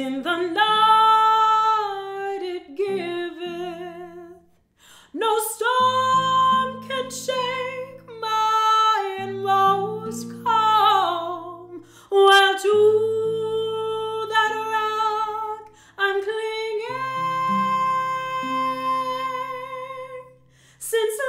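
A woman singing a slow hymn in long held notes with vibrato, phrase by phrase with short breaks, accompanied by a fingerpicked acoustic guitar.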